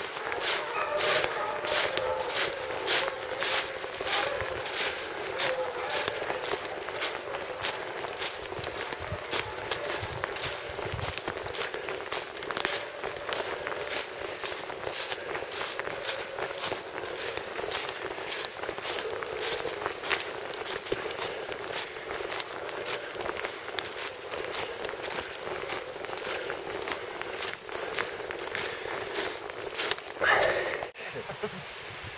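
Footsteps walking through dry fallen leaves on a woodland slope, a steady crunch about twice a second.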